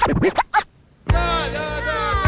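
A quick run of record-scratch sound effects in a short musical sting, then, after a brief pause about a second in, a held music chord with a slowly falling tone.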